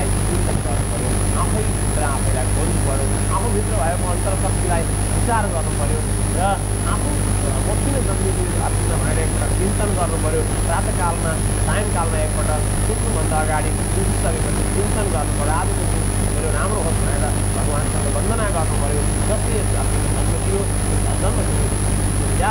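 A man speaking over a steady low hum, with a thin high-pitched whine running underneath.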